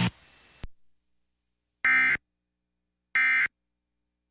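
The radio hum cuts off with a faint click. Then come two short, shrill bursts of digital data warble from a NOAA Weather Radio EAS broadcast, a little over a second apart. They are the SAME end-of-message (NNNN) codes that close the Severe Thunderstorm Warning.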